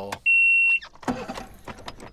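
A single electronic beep: one steady high tone about half a second long, starting a quarter second in, and the loudest sound here.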